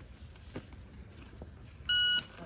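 Near-silent pause with a couple of faint clicks while the shooter waits on the shot timer's delay, then, near the end, the shot timer's start beep: a steady, high electronic tone signalling the shooter to draw and fire.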